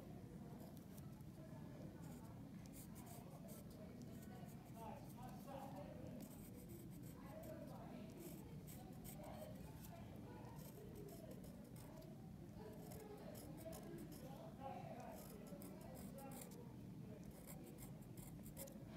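Faint scratching of a black fine-line ink pen on paper, many short strokes in quick succession, over a low room hum.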